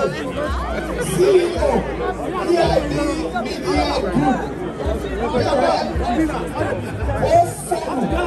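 Overlapping chatter of several people talking at once close by, with no single clear speaker.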